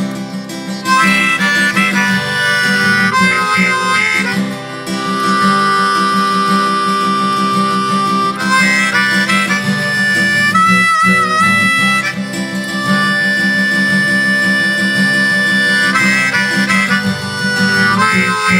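Instrumental harmonica solo over steadily strummed acoustic guitar. The harmonica comes in about a second in with long held notes, and bends one wavering note in the middle.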